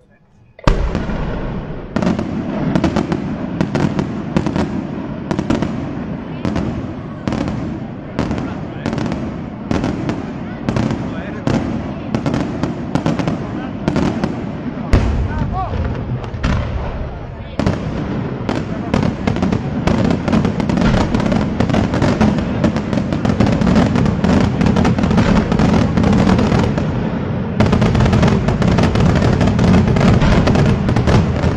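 Daytime fireworks barrage: rapid, continuous bangs of shells bursting overhead in white and coloured smoke. It starts suddenly about a second in and grows louder and heavier toward the end.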